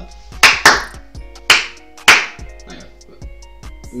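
Four loud, sharp hand smacks close to the microphone, unevenly spaced through the first half, over rap music playing quietly underneath.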